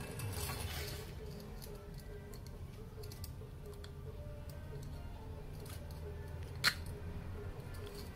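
Soft background music with light clicks and rattles of small plastic and metal parts being handled as a brush holder is fitted onto a power window motor's armature. One sharper click comes about a second before the end.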